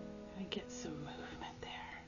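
Soft background music with a breathy, whispered voice over it from about half a second in.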